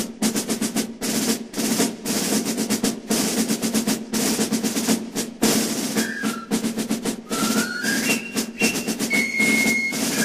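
Background music led by a snare drum playing continuous rolls in a steady pattern. A few high sliding notes and one held high note come in over the drums in the second half.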